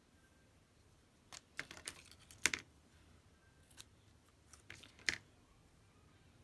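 Paper being handled by hand: two bursts of crisp rustling and sharp clicks, the first and loudest about a second and a half to two and a half seconds in, the second about five seconds in.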